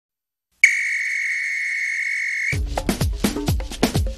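Intro theme of a TV programme: after a moment of silence, a steady high whistle tone sounds for about two seconds. Then upbeat electronic dance music with a heavy beat starts.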